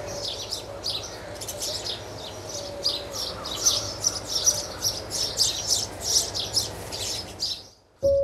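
Many small birds chirping in quick short calls, busiest from about the middle, over a faint steady background hum; it stops just before the end.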